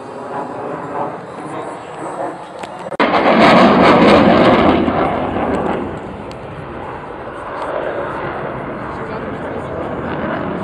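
Jet aircraft engine noise from a military jet flying overhead. It comes in suddenly and loud about three seconds in, then eases off after a couple of seconds and goes on at a lower, steady level.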